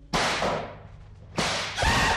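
Two whip lashes from a recorded sound effect, about a second and a quarter apart, each a sudden crack that fades quickly. The music comes in with a wailing cry just before the end.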